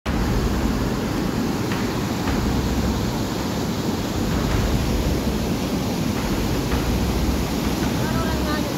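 Flash-flood torrent of muddy water rushing past, a steady loud rush.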